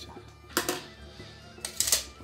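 Two short clusters of sharp clicks and knocks, about half a second in and again near the end, as a cordless drill fitted with a long bit extension and a tape measure are handled and set down on a wooden stool. Background music plays under them.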